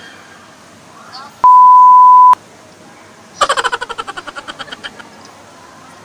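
An edited-in bleep: one steady, loud, high beep about a second long, starting a second and a half in. About a second later comes a rapid run of short pulses, some ten a second, fading out over about a second and a half.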